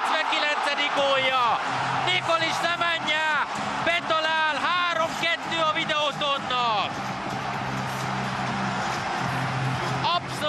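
Football commentator shouting excitedly as a goal goes in, long rising-and-falling cries between about one and seven seconds in, over the steady noise of the stadium crowd.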